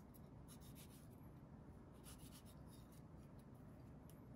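Very faint scratchy sounds of a kitchen knife slicing through a tomato held in the hand, a few light strokes about half a second in and again around two seconds in.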